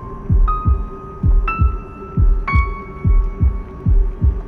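Horror-trailer sound design: a slow heartbeat, a double thump about once a second, over a low steady drone. A held high electronic tone is struck three times, about a second apart, each at a slightly different pitch.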